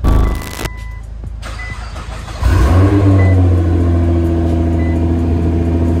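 Nissan GT-R's twin-turbo V6 being push-button started. There is a short noise burst and a few small beeps at first, then the starter. The engine catches about two and a half seconds in, flares briefly, and settles into a steady idle.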